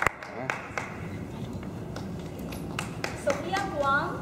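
The last few hand claps of a small audience's applause in the first second, dying away into the low murmur of people in a hall; a voice speaks near the end.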